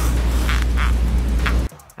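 A human arm joint creaking like a door hinge as it is bent, a string of short creaks roughly every half second, over a steady deep low hum that cuts off just before the end.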